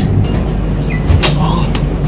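Passenger train coach running, heard from the door vestibule: a steady low rumble, with a few brief high squeaks and a sharp knock about a second in.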